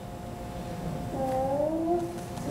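A person's single drawn-out voiced sound, starting about halfway in and rising slowly in pitch, over a faint steady hum.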